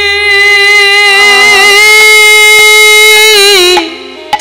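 Kirtan accompaniment: a single melody instrument holds one long high note, wavering slightly, then slides down and breaks off near the end. A low steady drone and a few light percussion taps sit underneath.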